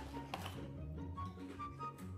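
Quiet background music: a soft low bass line under short, separate higher melody notes.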